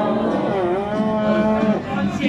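Several men's voices holding a long, drawn-out collective shout, the pitches wavering and overlapping, ending about two seconds in as crowd chatter takes over.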